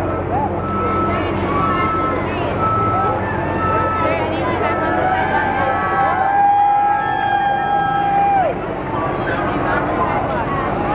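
Crowd voices over the low steady drone of the shuttle transporter's machinery, with a vehicle warning beeper sounding about one and a half times a second until about three and a half seconds in. About six seconds in, one voice gives a long drawn-out call.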